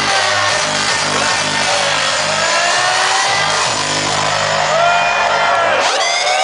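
Hardstyle dance music played loud over a club sound system: a fast, pounding kick drum under gliding synth lines. The kick drops out just before the end.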